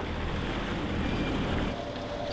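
A small fishing boat's engine running steadily at low speed, with water washing along the hull. The engine sound cuts off near the end.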